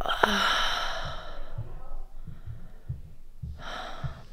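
A woman's long, weary sigh out through the mouth, lasting about a second, with a second breath shortly before the end. Soft low bumps sound underneath.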